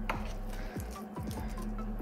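Soft squishing of chunky mashed red potatoes being scraped out of a mixing bowl onto a plate with a metal utensil, with a few light taps of the utensil against the bowl.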